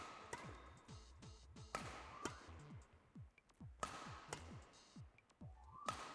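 Badminton rackets hitting a shuttlecock in a smash-and-long-return drill: sharp, echoing hits in pairs about half a second apart, each smash answered by a return, repeating roughly every two seconds.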